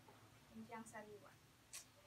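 A woman's voice saying a brief, quiet phrase, with a short hiss like an 's' near the end. Otherwise near silence over a faint steady low hum.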